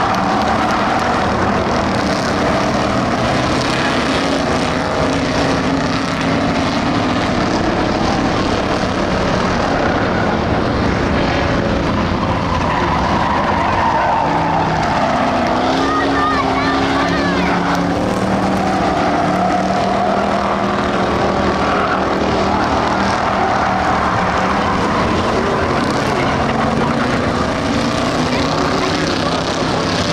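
A pack of Ford Crown Victoria stock cars racing on a dirt oval, their V8 engines running loudly, with pitch rising and falling as the cars accelerate through the turns and pass.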